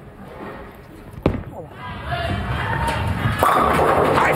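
A ten-pin bowling ball is laid down on the lane with a single thud about a second in and rolls with a low rumble. It crashes into the pins for a strike near the end, and the crowd noise swells right after the hit.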